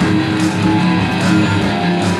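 Live rock band playing an instrumental passage with electric guitars, bass and drums, guitar to the fore and no singing.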